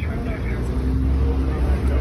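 Road traffic: a low, steady engine rumble from vehicles in the street, with a faint hum held for about a second midway.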